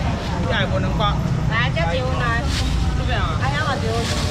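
Indistinct chatter from a crowd of shoppers, several voices overlapping, over a steady low rumble.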